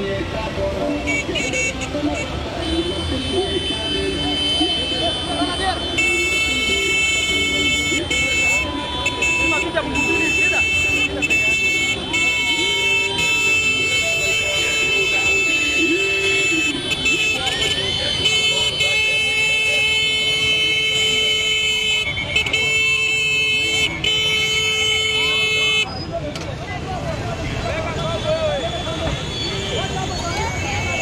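Motorcycle horns in a large procession sounding together in one long steady blare from about six seconds in until shortly before the end, over the running of many motorcycle engines and shouting voices.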